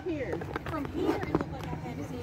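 Faint voices talking in the background, with a few light clicks around the middle.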